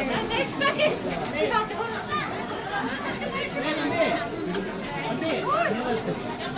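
Chatter of several voices talking over one another, high children's voices among them.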